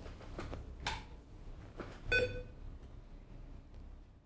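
Low background hum with a soft click about a second in and a short electronic beep about two seconds in.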